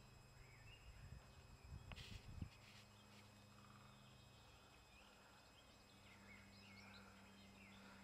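Near silence: faint outdoor ambience with a steady low hum, a few soft bumps about two seconds in, and faint bird chirps in the background.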